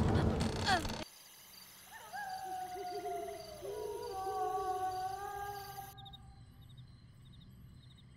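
A loud stretch with a woman's voice cuts off abruptly about a second in. A quiet night ambience follows: long wavering owl-like hooting calls over a faint, steady, high chirring of insects.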